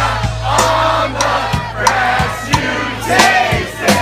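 Live rock band playing, with acoustic guitar, bass and drums; the drum hits and a held bass note can be heard. A crowd of voices sings and shouts along over the band.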